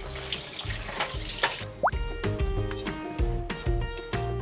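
Tap water running onto a whole mackerel as it is rinsed in the sink, shutting off abruptly a little under two seconds in. Background music with a steady beat plays throughout.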